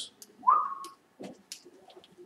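A short, clean high tone that rises and then holds for under half a second, about half a second in, followed by a few faint clicks.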